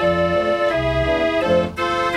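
Dutch street organ playing a tune: held pipe notes carrying a melody over a regular bass accompaniment, dipping briefly about three-quarters of the way through.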